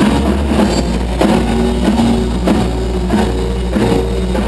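Live rock band playing loud: a drum kit beating a regular pulse about every two-thirds of a second over a sustained low bass and electric guitar.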